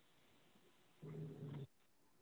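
Near silence on a video-call audio feed, with one faint, low, hum-like sound lasting under a second, about a second in.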